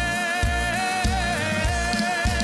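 A male pop singer holds a long sung note with vibrato, without words, over a band with a steady drum beat.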